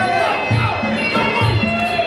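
Traditional Muay Thai fight music: a reedy pipe melody held over a steady drumbeat about twice a second, with the crowd shouting and cheering over it.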